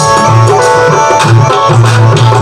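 Instrumental passage of a Rajasthani devotional bhajan: a harmonium holds steady chords over a regular beat of deep drum strokes and sharp hits from an electronic percussion pad played with sticks.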